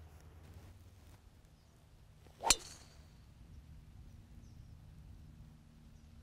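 A driver striking a teed-up golf ball: one sharp crack about two and a half seconds in, with a short hiss trailing after it, over a faint steady low hum.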